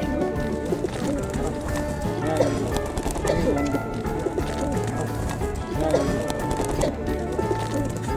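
Domestic pigeons cooing, a few short low calls, over background music.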